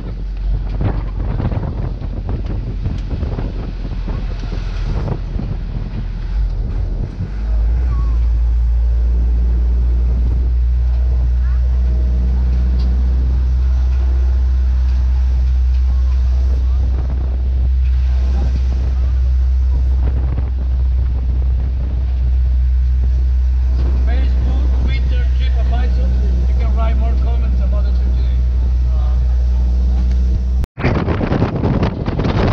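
Open-sided tour truck driving along a road, heard from aboard: steady engine and road rumble with wind buffeting the microphone. The low rumble grows louder about seven seconds in and then holds.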